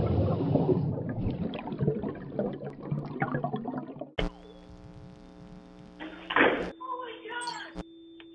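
Production-company logo sting. It opens with about four seconds of noisy clattering, splashing and voice-like sound effects, then breaks suddenly into a held electronic chord, with a second chord and a sharp hit about two seconds later.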